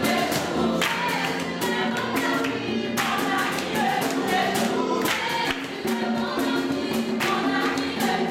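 Gospel worship music: a choir singing over a steady percussive beat.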